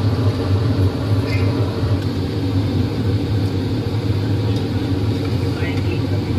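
A steady low machine hum, even in level throughout, such as a restaurant's air-conditioning or ventilation fans make.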